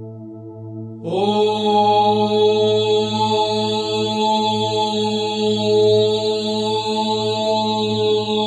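A single voice chanting the bija mantra "Lam", the seed syllable of the root (Muladhara) chakra. It comes in about a second in with a slight upward slide and is held as one long, steady tone over a low sustained drone.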